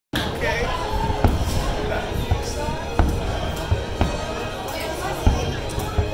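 Aerial fireworks shells bursting in a display, several sharp bangs roughly a second apart, over the chatter of a crowd of spectators.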